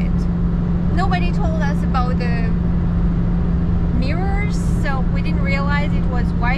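Pickup truck engine and road noise inside the cab while towing a heavy travel trailer: a steady low drone with a constant hum, the engine held at fairly high revs under the trailer's weight.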